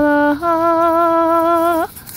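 A woman's voice toning in light-language chant: two long held vowel notes, a short lower one, then a slightly higher one held over a second that bends upward and breaks off near the end.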